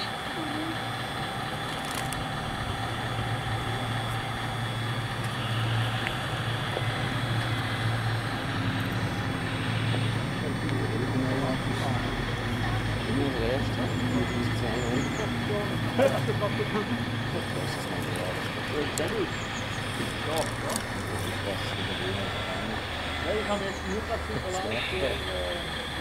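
Radio-controlled O&K model hydraulic excavator working, its pump and motors giving a steady mechanical hum with several fixed tones, with voices in the background.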